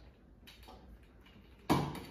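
Flexible octopus tripod's plastic ball-jointed legs clicking faintly as they are bent, then a sharp knock as the tripod is set down on a wooden tabletop near the end.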